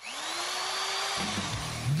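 Power-drill sound effect in a radio break stinger: a motor whine that rises quickly and then holds steady over a dense hiss, stopping abruptly about a second in, over a music bed.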